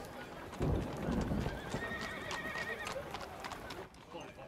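Horse hooves clip-clopping on a street, with a wavering horse whinny in the middle.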